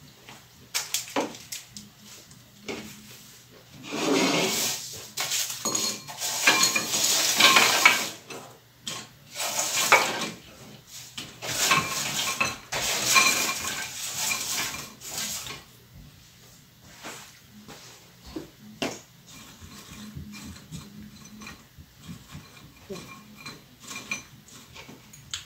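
Baked chickpea crackers sliding off a baking sheet and clattering into a bowl in two bouts of rattling. Lighter clicks follow as they are settled in the bowl by hand.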